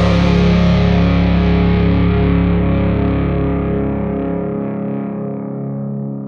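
A rock band's last chord ringing out: distorted electric guitar held and slowly fading, with the cymbal wash dying away. The lowest notes drop out about four and a half seconds in, leaving the guitar chord to decay.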